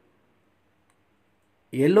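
Near silence with a single faint click about halfway through; a man's voice starts speaking near the end.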